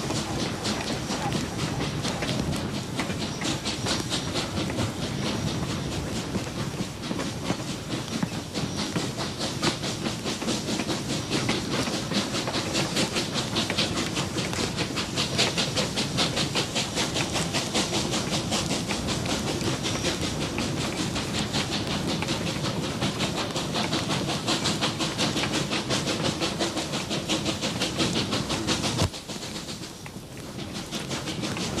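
Reading T-1 class 4-8-4 steam locomotive No. 2102 running under steam: a fast, even run of exhaust beats with steam hiss, cutting off suddenly near the end.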